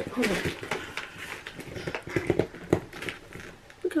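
Cardboard box flaps being pulled open and the plastic-bagged contents shifting, giving a run of irregular crackles, rustles and light knocks, the sharpest near the three-quarter mark.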